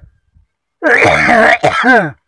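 A voice giving a loud, drawn-out cry without clear words, starting about a second in.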